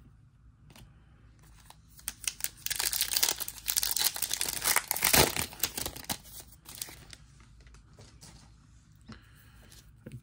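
Foil wrapper of a Panini Zenith football trading-card pack being torn open and crinkled by hand. The crinkling and tearing starts about two seconds in, is loudest in the middle, and fades out about six seconds in.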